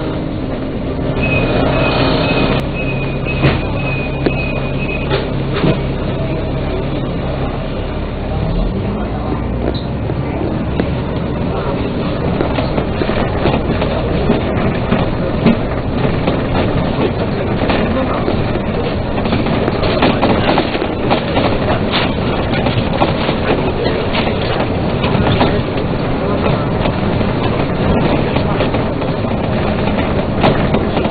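Dennis Trident double-decker bus engine running steadily at a stop, with a beeping tone in the first few seconds. The engine then rises in pitch as the bus pulls away about eight seconds in, followed by continuous running with road noise and rattles.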